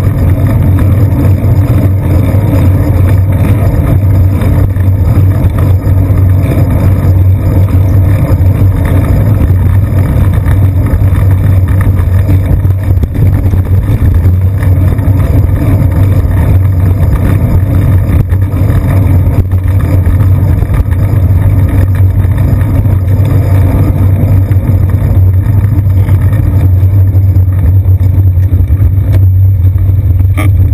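Loud, steady low rumble of a bicycle riding through city traffic, picked up by a seat-post-mounted GoPro Hero 2: road vibration and wind on the camera housing, with motor traffic running underneath.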